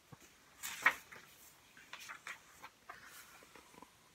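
Faint rustle of paper as a page of a hardback picture book is turned, one soft swish a little under a second in, followed by a few light handling clicks.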